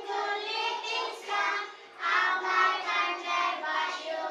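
A group of young children singing together, their voices pitched and phrased like a nursery rhyme, with a short break just before halfway.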